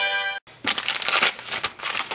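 The tail of a short musical transition sting, which stops about half a second in. Then a parts bag is pulled open by hand, crinkling and tearing.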